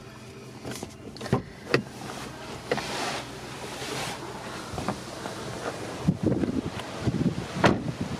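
Clicks, knocks and rustles of a handheld phone camera as a person climbs out of a car, with wind rumbling on the microphone outdoors over the last couple of seconds. A car door shuts with a sharp clunk near the end.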